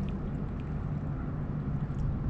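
Steady low outdoor rumble with a faint hum underneath and no distinct events.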